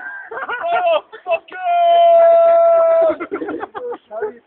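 Drunken shouting: a voice in short broken bursts, then one long, loud held note for about a second and a half, then more short bursts.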